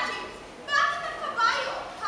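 Actors' high-pitched raised voices in a large hall, coming in about two-thirds of a second in after a brief lull.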